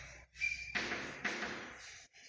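Chalk writing on a chalkboard: a run of short scratchy strokes, with a brief high squeak of the chalk about half a second in.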